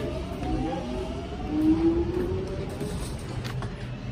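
An electric train pulling away, its motors whining upward in pitch over a low rumble.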